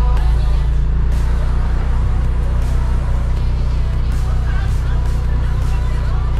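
Audi S5's V6 engine idling with a steady low exhaust drone as the car reverses slowly; the owner says the engine runs a little rough.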